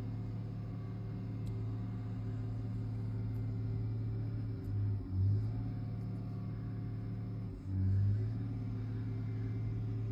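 John Deere wheel loader's diesel engine running with a steady low drone, surging louder twice, about halfway through and again near the eight-second mark, as the plow truck struggles stuck in deep snow.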